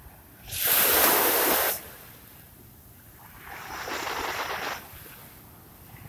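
Small waves washing up onto a sandy beach: a loud rush of surf about half a second in lasting just over a second, then a softer wash a few seconds later.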